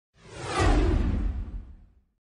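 Whoosh sound effect for a logo reveal, with a deep rumble underneath. It swells in quickly, sweeps downward in pitch and fades away.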